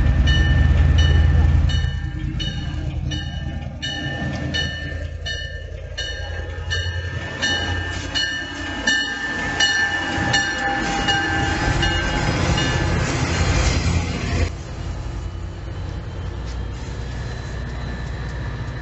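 Diesel locomotives of the Rio Grande Ski Train pulling slowly into the station with engines rumbling, loudest in the first two seconds. The locomotive bell rings about twice a second and stops about fourteen seconds in, with a thin steady squeal underneath.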